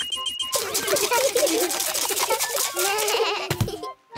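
A cartoon metal detector beeps in a steady pulsing tone that stops about half a second in. Then a group of cartoon children's voices chatter and squeal excitedly without clear words, over rapid scratchy digging sounds in sand. A low thud comes near the end.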